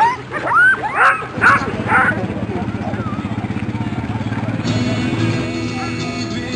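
Dogs yipping and barking in quick short calls, which stop about two seconds in, giving way to a pickup truck's engine running with a steady low throb. Music comes in near the end.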